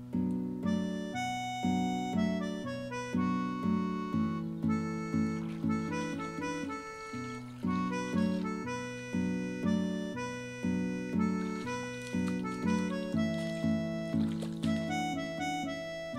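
Background instrumental music with a steady rhythm of chords, about two beats a second.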